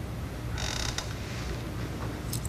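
Handling noise from a handheld microphone as it is passed between people: a brief rubbing scrape about half a second in, then a click, over a low steady hum.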